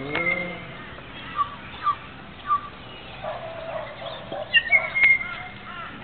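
Birds calling: a string of short chirps about half a second apart, then a louder flurry of calls near the end.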